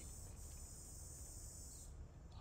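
Insects chirring in a steady, high, even drone, faint under a low background rumble; the drone stops just before the end.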